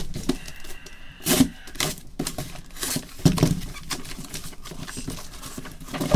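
A cardboard shipping case being handled and opened by gloved hands: irregular scraping, rubbing and tearing of cardboard with scattered knocks.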